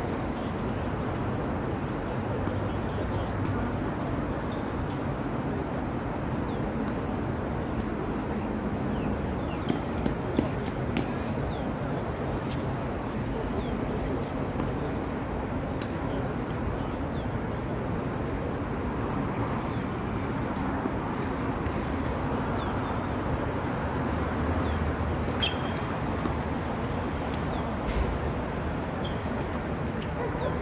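Tennis rally on an outdoor hard court: faint clicks of rackets striking the ball every second or two, over steady traffic noise from an elevated highway overhead. A few sharper knocks come in quick succession about ten seconds in.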